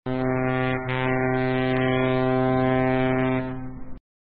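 Ship's horn sounding one long, steady, low blast of about four seconds, with a slight dip just under a second in and fading near the end.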